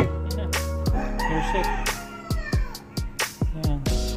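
Background music with a steady beat and bass. About a second in, a rooster crows over it, one call of about a second and a half that falls in pitch at the end.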